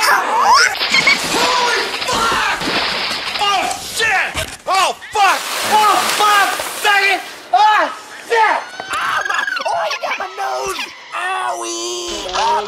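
Cartoon duck voices squawking and chattering in quick bursts, Donald Duck-style, with a splash of water from a thrown bucket.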